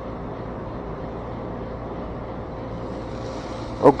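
Steady low outdoor background rumble with a faint steady hum, broken near the end by a short spoken word.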